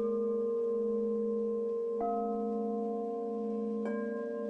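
Ambient background music of steady held tones over a slowly wavering low drone. The chord shifts about two seconds in and again near the end.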